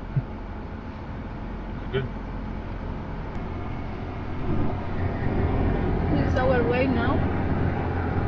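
Car engine and road noise heard from inside the cabin: a steady low rumble that grows louder about halfway through. Faint voices come in near the end.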